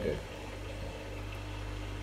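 A steady low hum, with a man's voice trailing off in the first moment.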